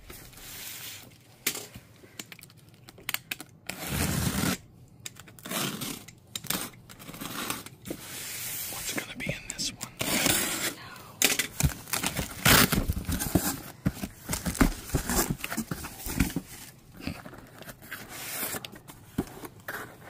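Opening a taped cardboard shipping box by hand: a box cutter slicing through packing tape, then cardboard flaps tearing, scraping and rustling as the box is pulled open and smaller boxes are drawn out. The sound comes in irregular bursts with sharp clicks.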